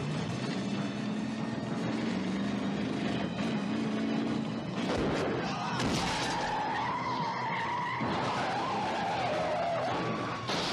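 A car engine running at speed for the first half, then a sudden crash-like burst about halfway through. A long wavering screech of skidding follows as the flame-painted 1968 Chevelle goes over onto its side.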